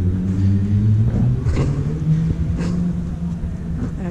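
Steady low engine hum of a motor vehicle running nearby, over a low rumble, its pitch shifting slightly about a second in.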